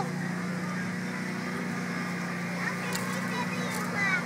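A steady low mechanical hum that holds level throughout, with faint voices in the background.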